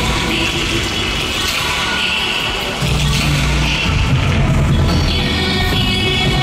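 Loud electronic dance music from a live concert's sound system. The bass drops away briefly and comes back heavy about three seconds in.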